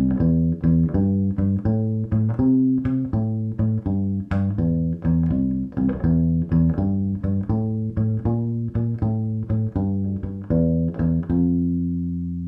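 Fretted bass ukulele playing a 12-bar blues bass line in C with a swing feel: a continuous run of plucked notes in an uneven long-short rhythm, ending on a long held note near the end.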